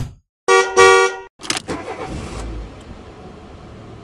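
A car horn honks for about half a second after a sharp click. A second sharp hit follows, then a low rumble that fades into a hiss.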